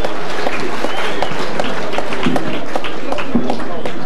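Audience applauding: many hands clapping at once in a steady run of claps.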